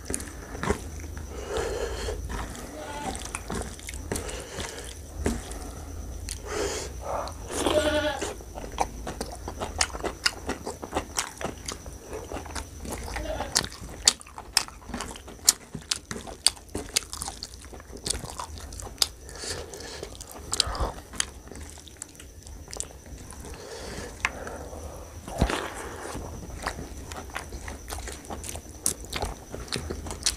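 Close-miked eating sounds: wet chewing and lip smacking of rice and mutton curry, with many sharp mouth clicks throughout. Fingers squish and mix the rice through the curry gravy between mouthfuls.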